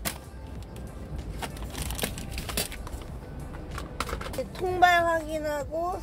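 Scattered sharp clicks and knocks of camping gear being handled. Near the end, a woman's voice holds a drawn-out sound for about a second.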